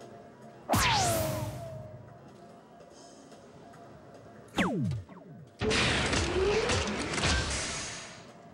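Electronic soft-tip dartboard sound effects: a sudden hit effect with falling tones about a second in, a shorter falling sweep at about four and a half seconds, then a loud, noisy award effect lasting about two and a half seconds, the machine's sound for a Low Ton (three darts scoring 100 or more).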